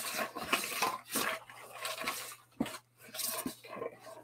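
A shipping package being pulled open and handled by hand: irregular crinkling, rustling and small clicks and knocks of cardboard and plastic packing.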